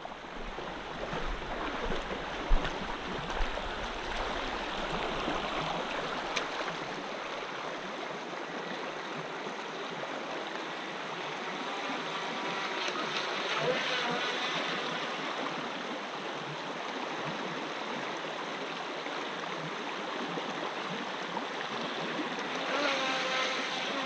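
Shallow mountain stream running over a stony bed: a steady rush of water. A sharp knock sounds a couple of seconds in.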